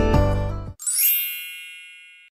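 Acoustic guitar background music stops abruptly under a second in. A bright, high sparkling chime follows with a quick upward sweep, then rings and slowly fades: a transition sound effect for an on-screen title.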